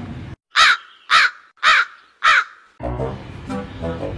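A crow cawing four times, the calls evenly spaced about half a second apart, dubbed in as a comic sound effect for an awkward pause.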